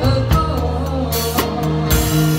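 Live band music: a drum kit with sharp snare and cymbal hits over bass and guitar, with a woman singing the melody.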